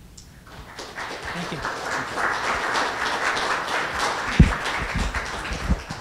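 Audience applauding, building up about a second in and holding steady, with a few low thumps near the end.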